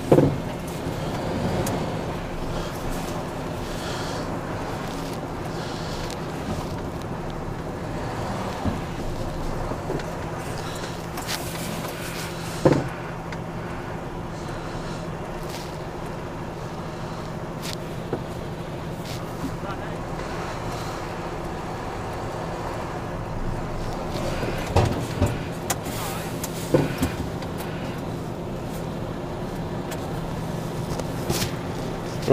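Diesel engine of a tipper lorry running steadily at idle, heard from inside the cab, with a few sharp knocks and clicks: one about halfway through and several more near the end.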